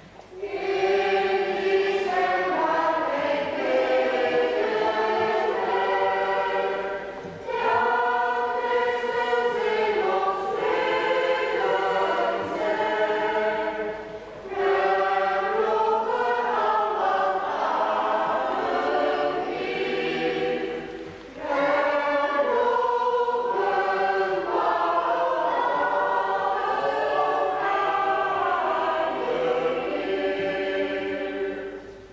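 Church choir singing a hymn, in long sung phrases of about seven seconds, each followed by a brief pause for breath.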